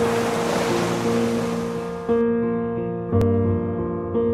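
Slow piano chords, a new chord struck about once a second, over the rush of sea surf that cuts off about halfway through. A single sharp click comes shortly before the end.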